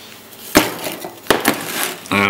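Metal Delft clay casting frame halves knocking against a workbench as they are taken apart and set down: two sharp knocks about a second apart, the first the loudest, then lighter handling noise.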